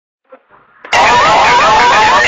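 Engine-starting sound effect that starts abruptly about a second in: a motor cranking, loud, with a quickly repeating rising whine.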